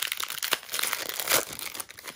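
Shiny foil wrapper of a football trading-card pack crinkling and tearing as it is ripped open by hand, a run of irregular crackles.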